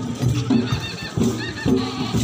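Traditional folk music from a street procession: a steady rhythmic beat of low pitched notes pulsing about twice a second, joined about half a second in by a high warbling wind-instrument melody.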